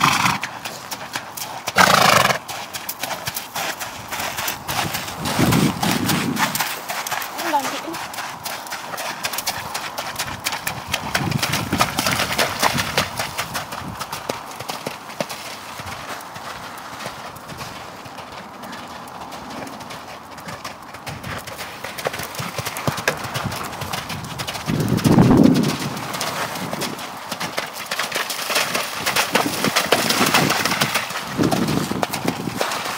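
A horse's hoofbeats on a wet, muddy sand arena as it trots and canters under a rider, with a few short vocal sounds scattered through, the loudest about two seconds in and another near the end.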